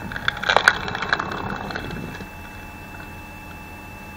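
Homemade screw-cone log splitter, its threaded cone driven by a 5.5 kW electric motor, boring into a log: wood cracking and splintering for about two seconds, loudest about half a second in, as the log bursts apart. The motor's steady hum runs underneath.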